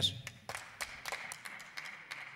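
Light applause from a few people: scattered, irregular hand claps starting about half a second in.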